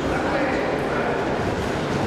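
Voices of coaches and spectators shouting short calls during an amateur boxing bout, over a steady background hubbub.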